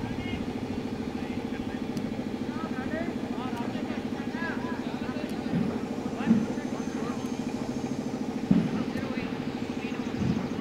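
An engine runs at a steady idle with a low, evenly pulsing hum, under faint scattered calls from players on the field. Two brief sharp sounds stand out, about six and eight and a half seconds in.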